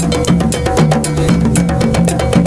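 West African hand drums, a djembe and a pair of rope-tuned dunun bass drums, playing a fast, dense rhythm, the dunun giving short low notes that step between pitches.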